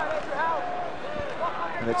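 Arena background of crowd noise with faint, distant voices calling out, and a single low thump about a second in.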